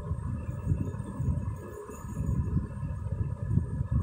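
Steady background noise: a low, uneven rumble with faint steady tones above it.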